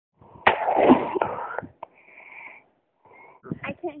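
A single shot from a .357 Magnum revolver about half a second in: a sharp crack followed by about a second of echo, loud enough to leave the shooter with a beeping in her ear.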